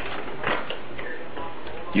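Light metallic clicks of a metal electrode plate being lowered over threaded bolts onto a gasket in a dry-cell stack, a few scattered ticks over a steady background hiss.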